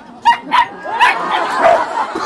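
A dog barking in a few short, sharp yips in the first second, then more barking mixed with a person laughing.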